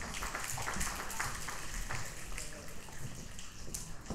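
Congregation applauding, many hands clapping, dying away near the end.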